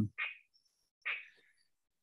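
Two short, faint breaths from a man pausing mid-answer, about a second apart.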